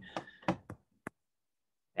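A few faint taps and clicks of a stylus on a tablet screen during drawing, the sharpest about a second in.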